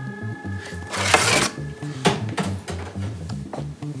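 Background music with a steady bass beat, and a short rasping noise about a second in.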